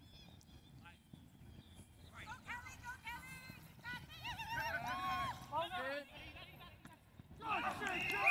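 Several high-pitched voices shouting and cheering over one another while a flag football play runs, picking up about two seconds in and again near the end, over a steady low rumble.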